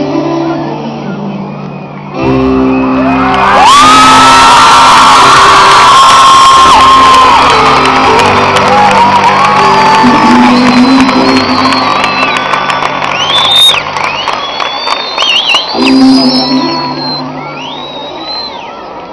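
Live pop band playing sustained chords in an arena, with the crowd screaming, whooping and cheering over the music. About two seconds in the band comes in louder, and a second later the crowd's screams surge and stay loud before easing off near the end.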